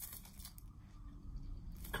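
Faint rustling of a paper record inner sleeve being handled, with a soft click near the start, over a steady low hum.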